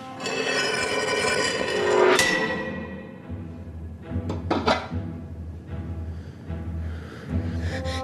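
Orchestral score music with low strings and drum hits, swelling to a peak about two seconds in, then continuing over a low rumble.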